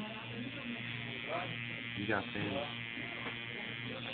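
A tattoo machine buzzing steadily as its needle works ink into skin.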